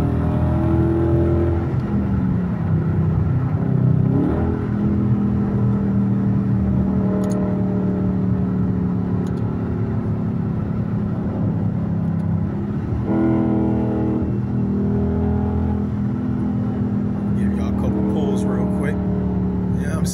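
Dodge Charger R/T's 5.7-litre HEMI V8 heard from inside the cabin at highway speed, a steady engine drone. The revs change about two-thirds of the way in as the car is shifted down a gear in paddle-shift manual mode.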